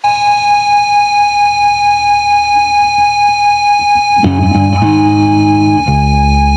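Distorted electric guitar opening a hardcore punk song: a single sustained high feedback tone starts suddenly and wavers in loudness about three times a second, then about four seconds in low distorted guitar and bass notes slide in.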